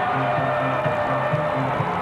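Arena music played over the public address to celebrate a home-team goal: a rhythmic line of held low notes stepping back and forth, over crowd noise.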